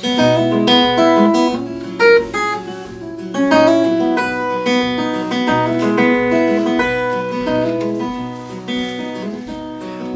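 Acoustic guitar played fingerstyle with a capo on the neck: a run of picked melody notes over a bass line, with no singing.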